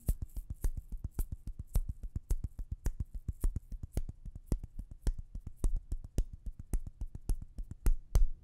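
A percussion beat playing on its own, a quick steady pattern of low thumps and short clicks. A high shaker hiss fades out in the first second.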